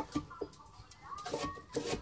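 Light clicks and taps of hands pressing candies onto an iced gingerbread house. About a second and a half in comes a brief, faint, high-pitched sound.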